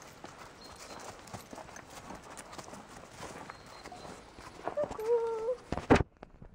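A pony's hooves walking on grass, soft irregular footfalls. A short held voice sound comes near the end.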